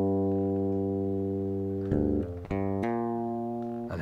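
Fretless bass guitar: a plucked note rings and slowly decays, then about two seconds in a quick hammered-on change of note leads into a new held note that fades toward the end.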